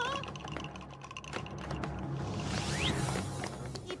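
Cartoon sound effects of magic markers moving out of their box: a rapid patter of light clicks, with a swelling whoosh and a short rising whistle about three seconds in, over background music.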